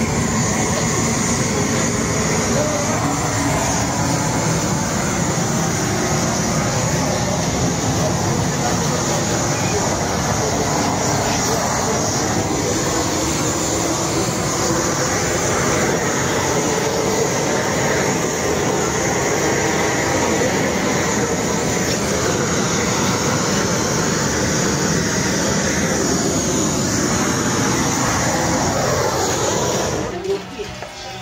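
Gas flame torch running steadily as it singes the hair off a slaughtered pig's carcass, with voices faintly underneath.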